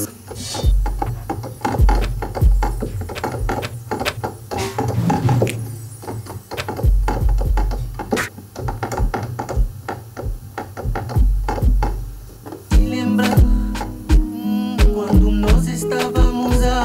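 Electronic kizomba beat playing back in a music production program: long, deep bass notes under a steady drum-machine pattern of kicks and percussion, with a pitched melodic layer joining near the end.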